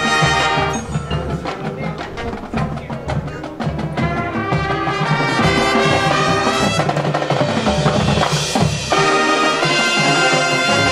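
High school marching band playing: brass and drumline together. The music drops to a softer stretch led by drum hits about a second in, then builds back up to full brass near the end.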